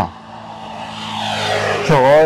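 A motor vehicle approaching, its engine hum and road noise growing steadily louder over about two seconds.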